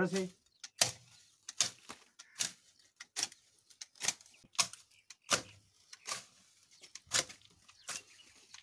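Hand sickle slashing into woody shrubs on a stone wall: about ten sharp cutting strokes, a little under a second apart.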